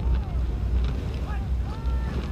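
A steady low rumble, with faint distant voices rising and falling over it.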